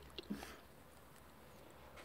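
Near silence: faint room tone, with one light click just after the start.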